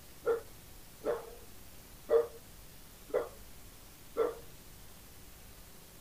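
A dog barking five times, about once a second, in short single barks.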